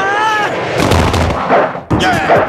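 Film fight-scene sound effects: a wavering yell that breaks off about half a second in, then heavy booming impact hits. The sound cuts off abruptly just before the end.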